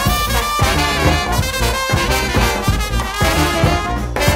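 New Orleans second line brass band playing: trumpet and trombone lines over a steady drum beat.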